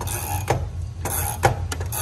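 A wrench clicking on the steel bungee's adjustment nut as the nut is backed off: a few sharp metal clicks, unevenly spaced, over a steady low hum.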